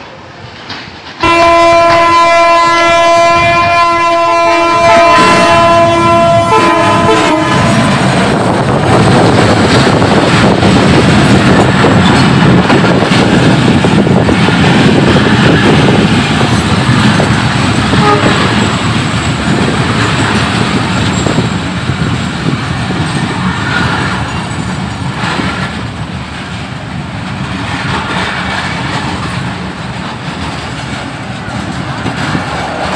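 A train's horn sounds one long multi-tone blast of about six seconds. Then an intercity passenger train runs close past with a loud rumble and the clatter of wheels over the rails, easing somewhat in the last few seconds.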